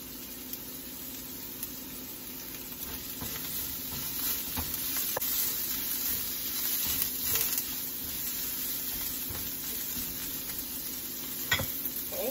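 Sliced shallots sizzling steadily in hot oil in a wok, a little louder for a few seconds near the middle. A silicone spatula stirs them, with a few light knocks against the metal.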